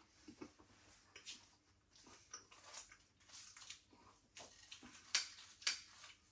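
Faint eating sounds: chewing a puff-pastry sausage roll, then a fork cutting into it on a plate, with scraping and two sharper clinks near the end.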